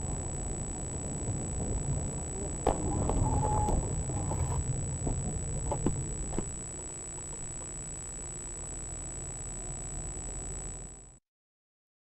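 Low, steady road and engine rumble inside a moving car, recorded by a dashcam, with a constant thin high-pitched whine over it. A few sharp knocks come between about three and six seconds in, and the sound cuts off abruptly near the end.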